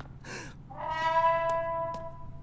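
A trombone blown once: a single steady brass note that starts just before the middle and is held for over a second.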